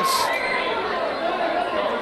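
Football ground crowd noise: many voices chattering and calling out at once, with a brief louder shout at the very start.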